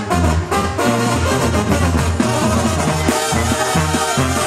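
Sinaloan-style banda playing live: a loud brass band with a tuba bass line moving from note to note under brass and drums.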